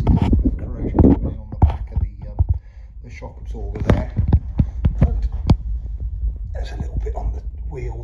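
A man talking in bursts the recogniser missed, with a low rumble and a string of sharp clicks and knocks in the middle from a handheld phone being moved and handled close to its microphone.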